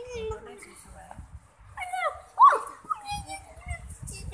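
High-pitched wordless vocal sounds, sliding in pitch, with a sharp rising squeal about two and a half seconds in.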